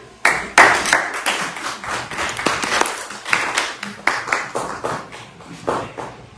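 A small group of people clapping: a scatter of individual hand claps that thins out near the end.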